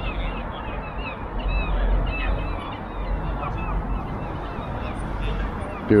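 Many birds calling at once, a steady stream of short, quick calls over a low, steady rumble.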